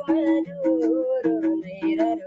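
A man sings a folk song to his own hand drum. The drum keeps a steady rhythm of alternating low and higher ringing strokes under the voice.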